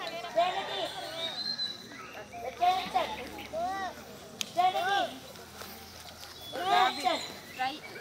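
Young children's high-pitched voices calling out and chattering in short bursts, with one sharp click about four and a half seconds in.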